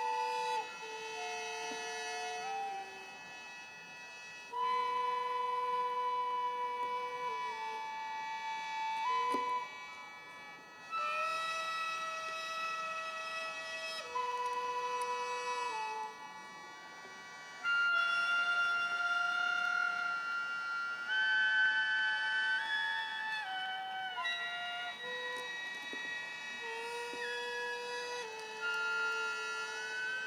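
Slow music on a solo reedy wind instrument: long held notes that step between pitches with small slides, in phrases separated by short breaths.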